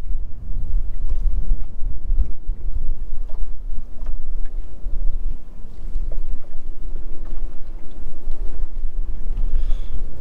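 Wind buffeting the microphone on an open boat, a gusty low rumble, with a faint steady hum underneath.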